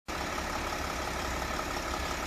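4WD Mercedes Sprinter van's engine idling steadily; the sound cuts in abruptly right at the start.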